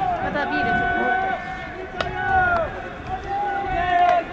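Baseball players' drawn-out shouted calls ringing across the field during pregame fielding practice, with a sharp crack of the ball about two seconds in and a few lighter clicks.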